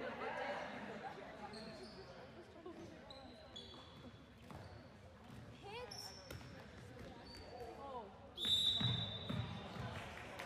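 Sneakers squeaking on a hardwood gym floor and a handball bouncing during play, with players calling out across the hall. Near the end a louder, sudden sound comes in with a high squeal held for about a second.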